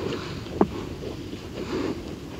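Open heath ambience: steady wind noise on the microphone with scattered small clicks, the loudest a single sharp click about half a second in.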